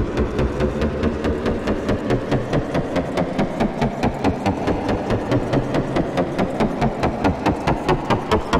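Electronic trap sound-effect sample: a dense, gritty texture chopped into rapid even pulses, about five a second, the pulses sharper and more distinct near the end.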